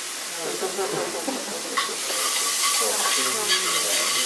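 Pancetta frying in olive oil in a pan on a portable gas burner, sizzling steadily while a spoon stirs it; the sizzle grows louder about two seconds in.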